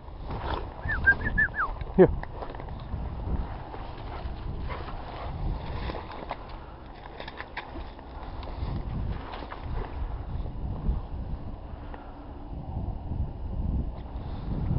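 Wind on the microphone and the rustle of footsteps through rough tussock grass, with scattered short crackles. Near the start there is a loud rising glide, a short run of high chirping notes, then a loud falling glide.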